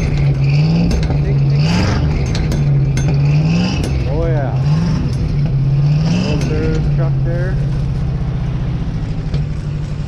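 Old Chevrolet Custom Deluxe flatbed truck's engine just after starting, blipped in short revs about once a second, each rising in pitch and dropping back. About seven seconds in it settles to a steady idle.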